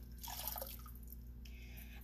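Faint pouring and dripping of thin ceramic glaze from a graduated cylinder into a bucket of glaze, loudest in the first half-second.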